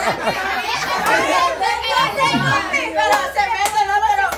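A small group of adults talking over one another and laughing. A few sharp taps come about three seconds in.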